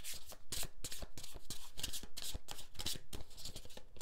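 A deck of tarot cards being shuffled by hand: a quick, uneven run of card flicks and taps as the cards are cut and slid between the hands.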